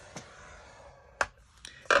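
Stylus dragged down a scoring-board groove through cardstock, a faint scratchy scrape, followed a little over a second in by one sharp click and a couple of lighter taps near the end.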